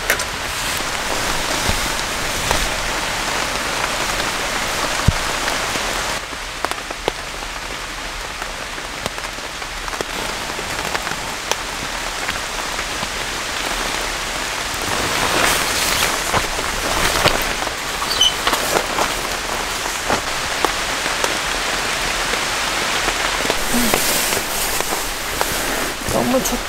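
Steady rain falling on a camping tarp shelter, with many small drops ticking on it; the rain eases slightly about six seconds in and picks up again around fifteen seconds.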